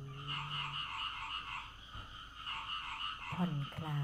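A steady chorus of frogs croaking in rapid pulses. A woman's drawn-out word fades out about a second in, and she speaks again near the end.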